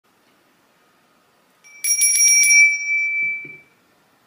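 A small bell rung in a quick run of about five strikes a little under two seconds in, then ringing out on one high, clear tone that fades over about a second and a half. Two soft low knocks sound as the ring dies away.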